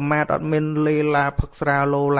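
A Buddhist monk's voice chanting on a steady, held pitch, in two long phrases with a short break about one and a half seconds in.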